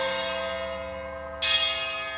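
Ensemble music: bell-like struck tones ring out and slowly fade, with a fresh sharp strike about one and a half seconds in.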